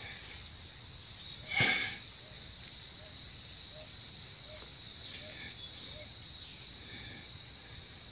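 Insects singing in a steady, high-pitched drone, with a brief louder noise about one and a half seconds in.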